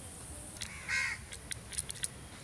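A crow caws once, about a second in, over a few short sharp clicks and scrapes from a fish being scaled and cut against a curved floor-mounted blade.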